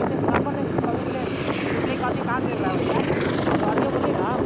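Engine and road noise of a moving road vehicle, heard from on board: a steady, dense rumble.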